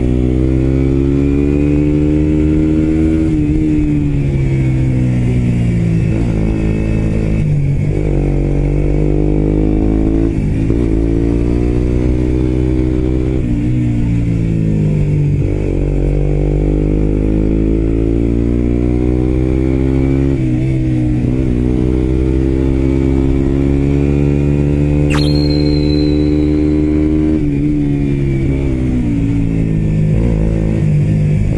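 Suzuki GSX-R125's single-cylinder four-stroke engine through its aftermarket muffler, heard from the bike while riding a winding pass road. The engine pitch climbs as it pulls, then falls away and picks up again several times through the bends.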